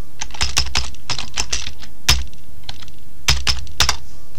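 Typing on a computer keyboard: a quick, uneven run of key clicks, with a louder stroke about halfway through and two more near the end.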